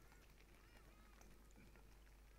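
Near silence in a pause between spoken phrases, with faint bird calls: a few short arching notes.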